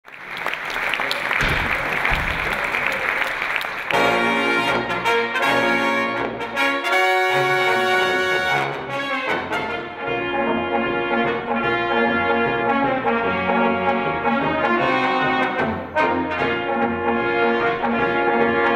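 A brass ensemble of flugelhorns, trombone and low brass playing a tune together, starting about four seconds in. Before that, a few seconds of even noise.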